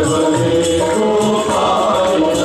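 Live Indian devotional music led by tabla, its deep strokes recurring under held, bending melody lines, with a steady beat of short high percussion strokes on top.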